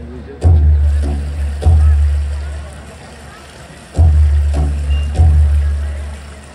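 Deep, booming drum beats in the dance music, coming in pairs about a second apart with a longer pause between the pairs. Each strike rings out and fades away.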